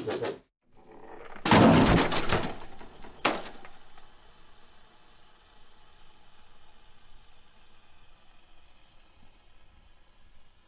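Sound effects for an animated logo: a short hit at the start, then a loud crash lasting about a second from about 1.5 seconds in, and another sharp hit just after 3 seconds, each like a heavy object slamming down, followed by a low fading tail.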